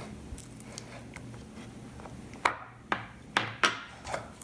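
A plastic mixing bowl and metal fork knocking on a wooden tabletop while slime is worked by hand: four sharp knocks in the second half, over a faint steady low hum.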